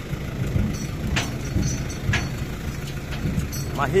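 Steady low hum, like a motor or engine running, with a couple of brief sharper sounds about one and two seconds in.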